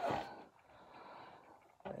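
The tail of a spoken word, then a soft, faint breath from the speaker, otherwise quiet room tone.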